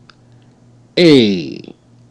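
A man's voice drawing out a single syllable about a second in, falling in pitch, as a word is sounded out slowly; a few faint clicks come just before it.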